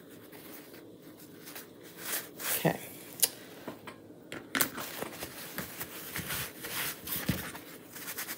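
Paper towel rubbing and rustling against a small wooden cutout letter as wax is buffed off it. There is intermittent scraping, with a few light clicks as pieces are handled.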